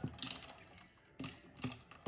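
Metal straw stirring iced coffee in a glass jar, clinking against the glass and ice in a few light, separate clicks.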